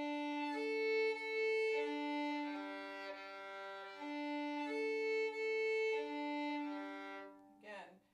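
Violin bowed across the G, D and A strings in a slurred string crossing, the bow rolling from the G string up to the A string and back in two smooth sweeps of about four seconds each, the notes overlapping with no break between strings.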